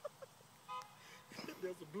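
A man laughing quietly in the second half, after a short faint tone a little before it.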